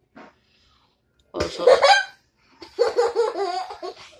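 Laughter in two bursts: a loud one about a second and a half in, then a longer run of giggling from about two and a half seconds on.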